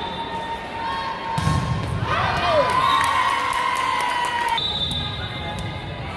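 Volleyball rally on an indoor court: a few sharp ball hits and sneakers squeaking on the gym floor, with spectators cheering and shouting as the point is won.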